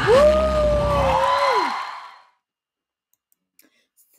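A woman's voice holding one long high note that falls away at the end, over the closing music of a live pop performance. The music stops about two seconds in, leaving near silence with a few faint clicks.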